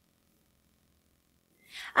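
Near silence, then near the end a woman's quick, audible intake of breath leading straight into her speech.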